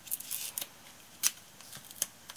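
A roll of double-sided 3D foam tape being pulled out and torn off, a short scratchy rasp followed by a few sharp snaps, the sharpest about a second in.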